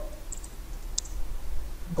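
A few light computer-keyboard keystrokes, two close together and then a clearer one about a second in, over a faint low hum.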